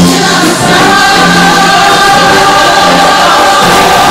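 Show choir singing in full voice over live band accompaniment, holding long sustained notes.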